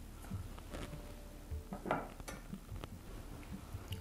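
Light clinks and knocks of handling as a potted plant in a macramê hanger with wooden beads is hung on a metal stand, with a few sharper clicks around the middle.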